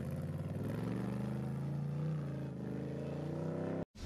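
Engine of an off-road 4x4 trial buggy running steadily at low revs, its pitch rising slightly and settling back; the sound cuts off suddenly near the end.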